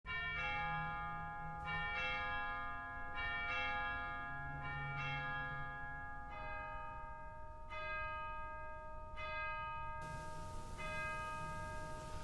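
Church bells ringing, about a dozen strikes with each tone fading away, coming in quick pairs at first and then more spaced out.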